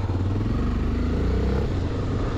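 Motorcycle engine running steadily as the bike is ridden at low speed, heard from the rider's point of view.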